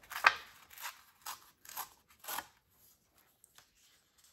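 Printed paper being torn by hand along its edge: about five short rips roughly half a second apart, the first the loudest, then a few faint handling clicks.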